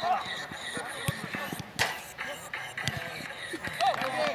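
Scattered shouts of footballers on a turf pitch, with a single sharp thud of the ball being kicked a little under two seconds in.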